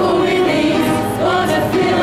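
A group of men and women singing together in chorus from song sheets, one sustained sung line after another.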